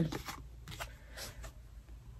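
Faint handling sounds of a tarot card being drawn from the deck and lifted: a few soft, light clicks and rustles in the first second and a half.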